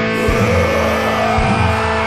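Hardcore punk band playing distorted guitars, bass and drums, with a crash near the start and a rising squeal through the first second.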